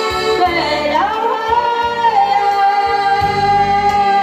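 A woman singing live into a microphone, accompanied by a Yamaha electronic keyboard with a repeating bass line. Her voice slides down and back up about a second in, then holds one long note.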